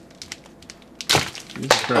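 Sticky dried cuttlefish snack being pulled apart by hand over its plastic bag: faint crinkling and small crackles, then a sudden loud burst of noise about a second in and a sharp click shortly after.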